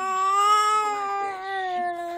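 A baby's long drawn-out vocal sound, one held note that rises slightly and then slowly sinks, with no break for breath.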